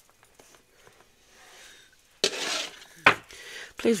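A tarot card deck handled on a wooden table: a short rustle of the cards about two seconds in, then a single sharp tap about three seconds in.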